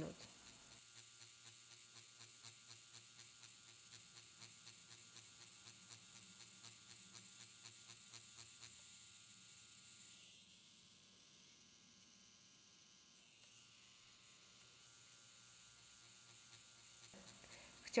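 Faint steady electric buzz of a Quantum One permanent-makeup pen machine running as its needle cartridge shades latex practice skin, with a soft regular pulse about two to three times a second from the back-and-forth shading strokes. The buzz drops quieter a little past the middle and comes back slightly near the end.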